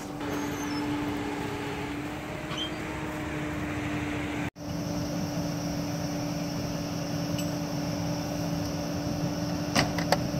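Steady hum of idling vehicle engines at the roadside, with one constant low tone running under it. It cuts out for an instant about four and a half seconds in, and a couple of sharp clicks come near the end.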